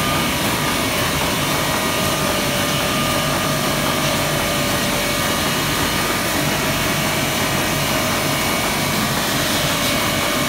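Roland Rekord sheet-fed offset printing press running: a steady mechanical running noise with a constant tone sitting over it, even and unchanging.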